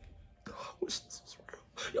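A man whispering and breathing in several short, faint, breathy bursts, an excited, stunned reaction.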